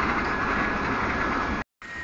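Steady mechanical running noise of workshop machinery, with a thin constant high whine over it, cutting off abruptly near the end.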